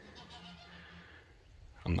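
A goat bleating faintly: one steady call lasting about a second.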